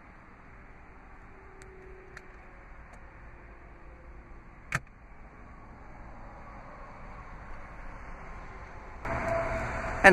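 Faint low background rumble with a few soft ticks and one sharp click about five seconds in; a louder rushing noise starts near the end.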